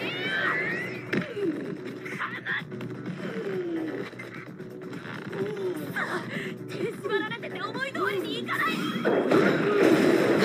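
Anime dialogue in Japanese with background music: characters' voices trading lines over a musical score.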